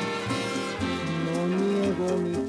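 Instrumental passage of a bolero played by a Latin dance orchestra on a 78 rpm record, with a low note held from about halfway through.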